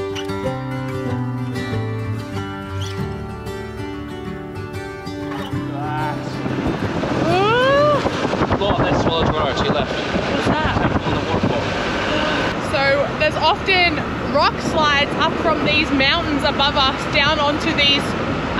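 Gentle instrumental background music with held notes for about the first six seconds. The music then gives way to motor scooter riding noise, a rush of wind and road sound on the microphone, with a brief rising tone about seven seconds in.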